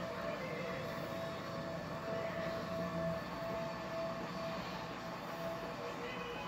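Steady background hum and hiss with a few faint held tones, unchanging throughout.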